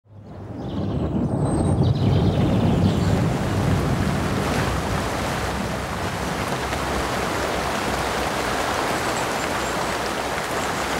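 Steady heavy rain falling, fading in over the first second, with a deeper rumble in the first few seconds.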